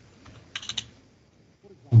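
A quick run of three or four computer keyboard keystrokes about half a second in, a number being typed into a field.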